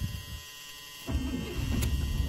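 1976 Cadillac Fleetwood Talisman's 500 cubic-inch V8 being cold-started after one pump of the gas pedal to set the choke: it catches about a second in and settles straight into a steady low idle.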